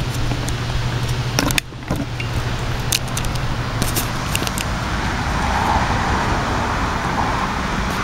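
Handling noise as a camera and tripod are picked up and carried: scattered clicks and rattles over a steady background rumble. A low hum drops away about a second and a half in.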